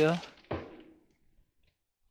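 A man's spoken word trailing off, then a single short dull thump about half a second in, then quiet.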